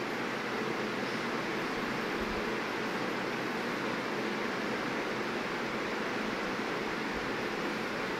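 Steady, even hiss of a kadhai of sugar syrup heating on a gas stove, the syrup just starting to simmer.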